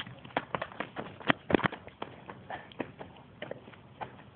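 Footsteps running on asphalt: a quick, irregular series of sharp taps, loudest about a second and a half in.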